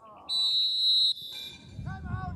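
Referee's whistle blown once: a single shrill, steady blast of just under a second, blowing the play dead after the tackle.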